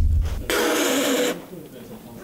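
A deep thump, then about a second of a person's loud, breathy, noisy outburst, a reaction of disgust to the drink just sipped.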